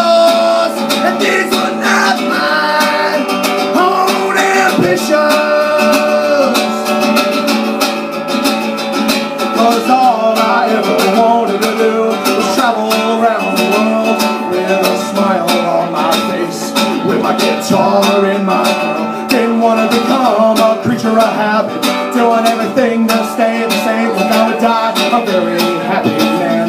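A man singing to his own steadily strummed acoustic guitar, played live.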